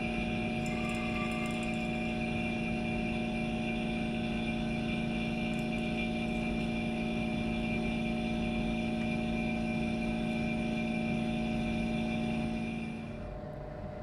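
Electric pump running with a steady hum, pulling vacuum on a Büchner funnel and filter flask to draw gold solution through the filter; the hum drops away about a second before the end.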